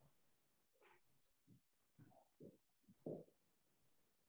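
Near silence: room tone, with a few faint, brief soft sounds, the clearest about two and a half and three seconds in.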